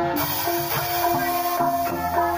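Javanese gamelan music playing in the Banyumasan style: struck bronze pot gongs and metallophones hold ringing notes over the strokes of a kendang hand drum.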